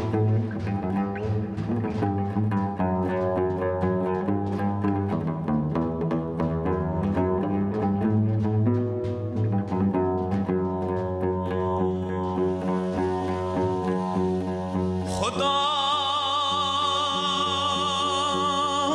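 Oud playing a plucked melody over a low accompaniment, with many quick notes. About fifteen seconds in, a male voice enters singing a long, wavering note of a qasida.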